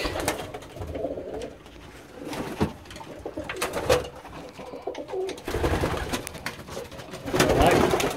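Domestic pigeons cooing in a small loft, with a few sharp clicks and bursts of rustling, the loudest near the end.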